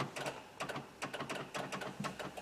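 Rapid, irregular light clicking, about seven clicks a second, from behind the rear quarter trim of a 1999 Honda Odyssey minivan, heard from inside the cabin. The clicking comes with the battery's parasitic draw, and the mechanic suspects a relay fed a faulty signal by a door switch.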